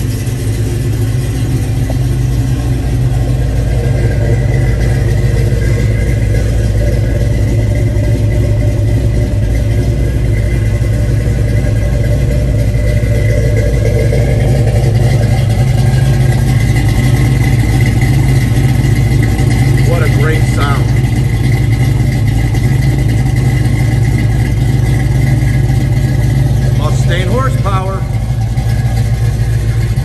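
1970 Ford Mustang Mach 1's 351 Cleveland V8, converted to a four-barrel carburettor, idling steadily, heard close at the exhaust tips.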